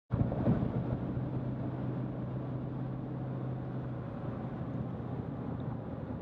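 Steady road and engine noise heard from inside a moving car's cabin, with a low hum running under it that fades about two-thirds of the way in.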